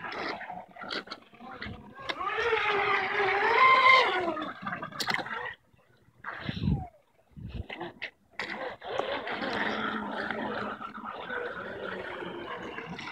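Miss Geico RC racing boat's electric motor on a 6S battery whining, its pitch rising and falling as the throttle is worked, loudest about four seconds in, with water splashing and hissing. After two short near-quiet gaps, the boat runs off across the water with a steady spray hiss under the motor.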